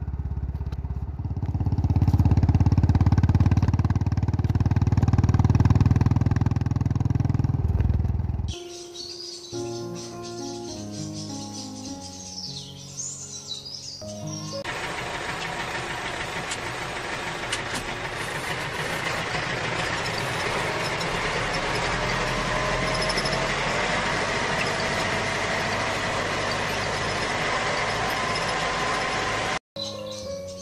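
A motorcycle engine sound runs steadily for about the first eight seconds and then cuts off suddenly. A short tune of simple stepped notes follows, then a steady, noisy engine-like hum with faint tones to the end.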